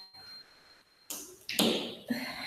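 A paper picture card is pressed and rubbed flat against a wall by hand, giving two short rustling brushes in the second half, after a near-silent first second.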